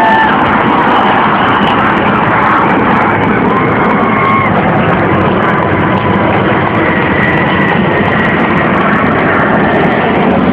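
Steady, loud roar of jet engines from the Boeing 747 Shuttle Carrier Aircraft carrying Space Shuttle Endeavour as it flies low overhead.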